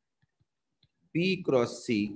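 About a second of near silence with a few faint clicks, then a man speaking in Bengali, lecturing, from a little past the middle.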